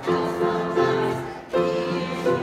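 An amateur chorus of elderly residents singing with grand piano accompaniment, holding long notes and starting a new phrase about one and a half seconds in.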